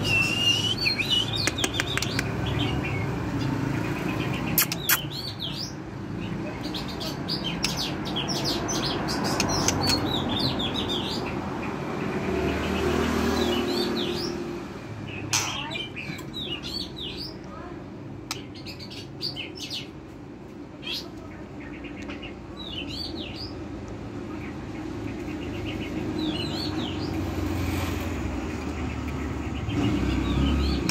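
White-rumped shama singing: short phrases of rising and falling whistles mixed with quick clicking notes, coming in scattered bursts with pauses between them, over a steady low background rumble.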